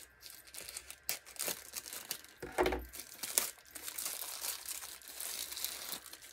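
Plastic wrapping crinkling and tearing in irregular crackles as it is pulled off a metal part of a ring stretcher/reducer.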